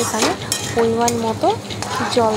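Metal spatula stirring and scraping fried potato pieces in a kadai, with a frying sizzle. A pitched sound that holds notes and glides between them runs over it.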